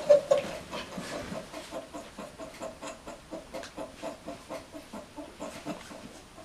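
A man's stifled, breathy laughter: a steady run of short pitched pulses, about three a second, loud at first and then dying down.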